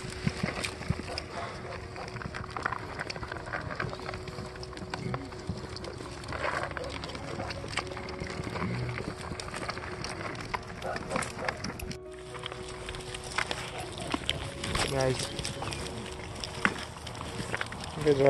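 Goats crowding and jostling at a feeding bucket: a dense patter of small knocks and clicks from their hooves, heads and the bucket as they push in to eat.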